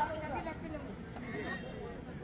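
A loud, high, wavering shout trails off in the first half second, followed by fainter shouting voices around a kabaddi court.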